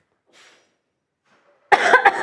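A hush, then near the end a woman coughs into her fist, a sudden loud cough.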